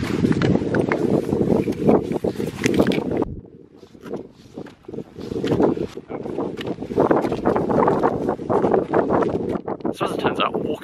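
Wind buffeting the microphone in two loud stretches, quieter for a few seconds in the middle, over the footsteps of crampon-shod boots on snow and rock.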